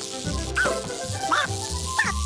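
Online slot game audio: a bouncy cartoon music loop with short squawks from the cartoon birds, about half a second and a second and a half in, as lightning strikes them during a bonus feature.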